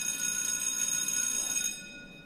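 A school bell ringing: a steady, high, metallic ring that cuts off shortly before the end.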